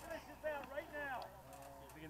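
Indistinct voices talking, with no clear words, fairly faint.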